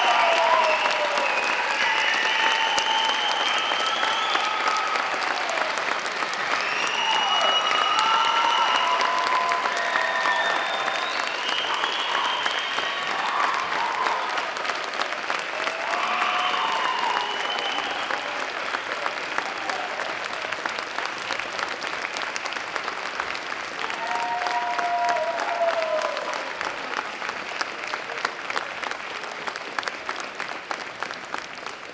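Audience applauding, with voices calling out over the clapping now and then; the applause slowly dies down toward the end.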